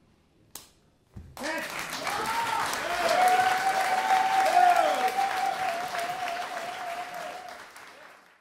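Audience applause and cheering breaking out about a second in, after a short silence and a single click, with whoops rising and falling over the clapping and one long held shout. The applause dies down near the end.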